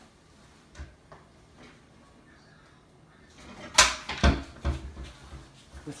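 A kitchen cupboard being opened and shut while a plate is fetched: a few faint clicks, then a sharp bang a little before four seconds in, followed by several lighter knocks.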